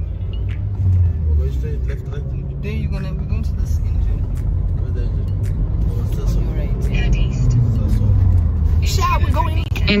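Steady low rumble of a moving car, its engine and tyres heard from inside the cabin.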